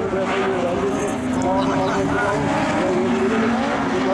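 Rallycross car engines running steadily, with people talking nearby.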